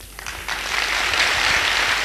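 Large audience applauding, building up about half a second in and holding steady.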